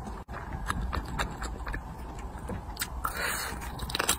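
Close-miked eating of crispy, sticky-glazed fried chicken: wet chewing with many sharp mouth clicks, then a louder crunchy bite a little after three seconds in.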